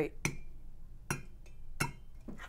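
Three light metallic clinks, each ringing briefly: a stainless steel percolator basket on its stem knocking against the pot as it is lowered in, the stem not catching its seat in the bottom.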